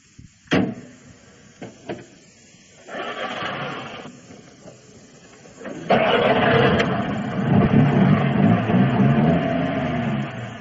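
Radio-drama sound effect of a car being started: a sharp knock and a couple of faint clicks, a first short burst of engine noise about three seconds in, then the engine catches and runs steadily from about six seconds in.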